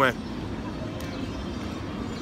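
Steady outdoor background noise, even and without a clear source, with one faint click about a second in.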